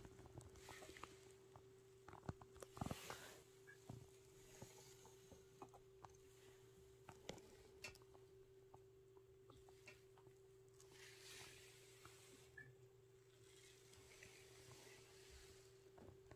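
Near silence: room tone with a faint steady hum and scattered small clicks and soft rustles.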